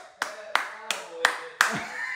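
One person clapping their hands five times in an even rhythm, about three claps a second.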